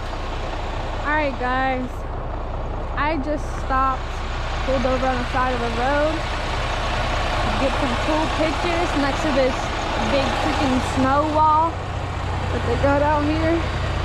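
Freightliner semi truck's diesel engine idling steadily. Short voice-like sounds, rising and falling in pitch, come and go over it several times.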